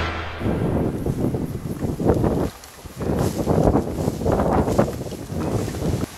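Irregular rustling and wind buffeting the microphone in bursts, with a short lull about halfway, as people move through tall grass.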